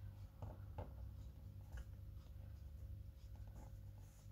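Faint scratching and rustling of fabric being worked by hand, with a few soft clicks, over a steady low hum.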